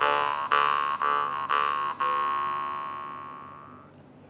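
Jaw harp plucked about twice a second, droning on one steady pitch with its overtones. The fifth pluck, about two seconds in, is left to ring and fades away.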